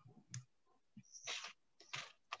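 Faint computer mouse clicks over a call line, with a short hiss a little past a second in.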